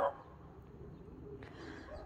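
A single short dog bark right at the start, then faint background sound.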